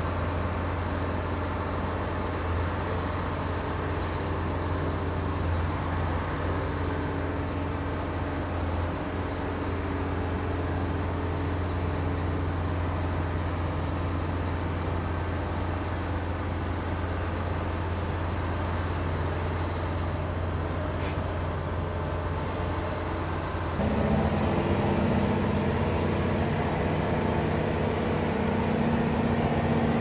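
Tugboat engines running steadily with a low hum, getting louder and fuller about six seconds before the end.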